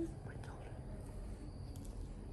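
Soft whispering over a low steady background rumble, with a couple of faint clicks.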